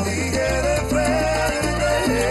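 Salsa music from a live band: a steady, stepping bass line with a wavering melody line above it.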